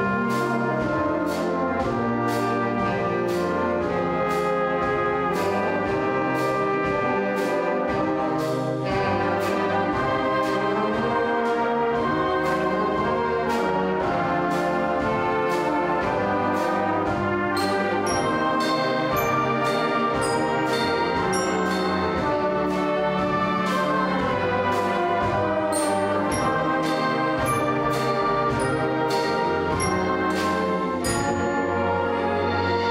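Community concert band playing, brass to the fore, over regular percussion strokes on the beat. Brighter, high-pitched percussion strikes join a little past halfway.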